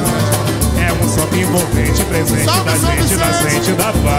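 Live pagode samba band playing: singing over acoustic guitar and cavaquinho, with fast high hand-percussion strokes and a deep drum pulsing steadily underneath.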